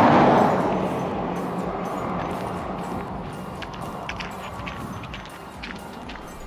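A vehicle passing on the highway, loudest at the start, its rushing tyre and engine noise fading away over several seconds. Light crunching steps on a gravel verge run through it.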